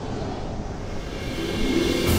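Waterfall sound effect: a rushing roar of falling water that swells louder, with sustained music tones coming in about halfway through.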